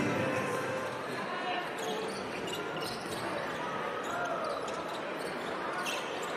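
Arena sound of a basketball game: a ball being dribbled on a hardwood court, a few short high squeaks typical of sneakers on the floor, and a crowd murmur with indistinct voices.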